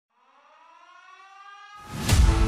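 A siren-like sound effect: one tone with a rich stack of overtones fades in and slowly rises in pitch while getting louder, then a loud rushing swell in the last quarter second.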